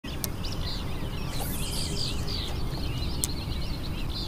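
Several songbirds singing and chirping over a steady low rumble, with two sharp clicks, one near the start and one about three seconds in.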